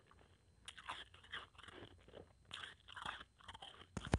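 Close-miked mouth chewing blended, powdery ice: two spells of fine, crackly crunching, the first about a second in, the second in the latter half.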